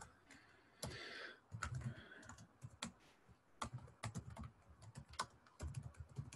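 Faint typing on a computer keyboard: irregular single keystroke clicks with short pauses between them.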